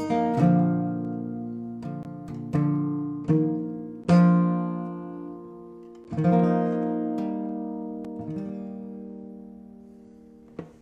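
Solo acoustic guitar, fingerpicked chords and single notes, each left to ring and die away. The loudest chord comes about four seconds in, and a last chord struck about six seconds in rings out and fades slowly.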